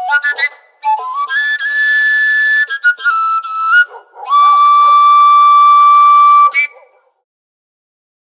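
Overtone flute (seljefløyte) played in short phrases, its notes jumping in steps between overtones, with a breathy edge. The tune closes on one long held note of about two seconds.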